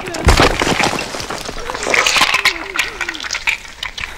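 Sound-effects track of destruction: dense crackling and breaking impacts, with a heavy deep thump just after the start. In the middle come a few short, wavering voice-like cries.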